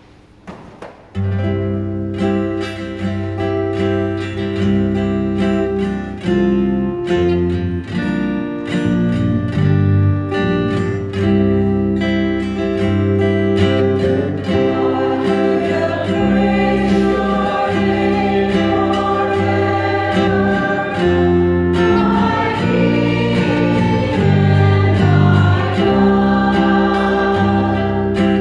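Church choir singing a responsorial psalm, accompanied by acoustic guitar and electric bass guitar; the music starts about a second in and fills out toward the end.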